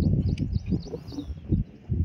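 Irregular low rumbling buffeting on the microphone, typical of wind outdoors, with small birds chirping faintly in the background during the first second.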